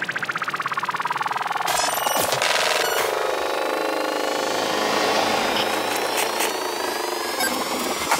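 Full-on psytrance breakdown with the kick drum and bass dropped out, leaving synthesizer textures and noise sweeps. A fast pulsing sound fades over the first second or so, and thin rising tones climb toward the end as the track builds back into the beat.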